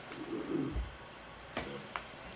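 A low, soft murmured hum like a closed-mouth 'mm' from someone in the room, then a brief voice sound and a small click near the end.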